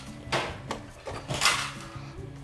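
Steel tape measure and wire being handled: two short sliding rasps, a light one near the start and a louder one about one and a half seconds in, as the tape's blade slides back.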